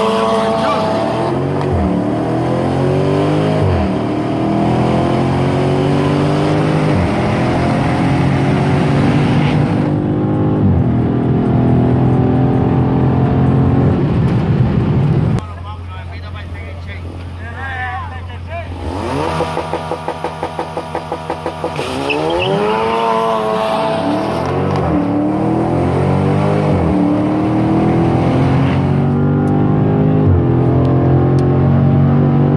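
Performance car engines revving in quick blips that rise and fall, then held at steady revs, heard from inside one of the cars at a street-race start. The sound drops off suddenly about halfway. The revving picks up again and settles into loud, steady engine running near the end.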